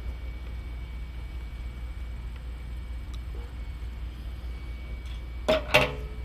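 A steady low hum, with a faint click about three seconds in.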